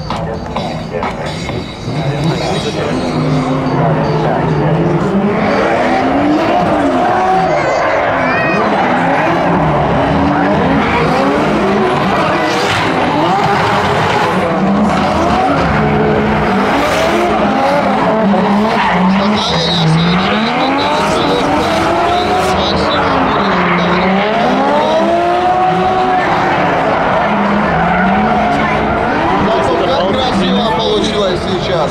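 Two drift cars, a Toyota Chaser and a Nissan Silvia S15, sliding in tandem: their engines rev up and drop again and again, and their tyres squeal through the slides.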